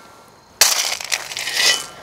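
Steel shovel blade driven into loose gravel, a crunching scrape of stone on metal starting about half a second in and lasting just over a second.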